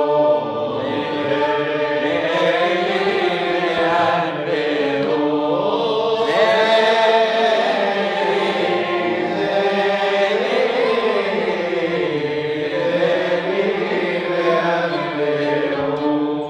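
A group of men chanting a Hebrew piyut in unison in the Arabic Nahawand maqam, with violins and an end-blown flute playing along under the voices.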